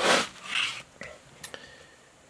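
Handling noise from a mechanical fuel pump picked up and turned in the hand: a short rustling hiss, a softer one, then two light clicks about half a second apart.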